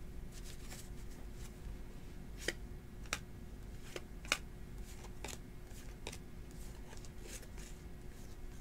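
2018 Donruss football trading cards being slid off a hand-held stack one at a time: a faint papery swishing of card stock, broken by a few sharp snaps of card edges, the loudest about four seconds in.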